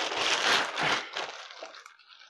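Thin plastic wrapping crinkling as a tripod is pulled out of it, fading out after about a second and a half.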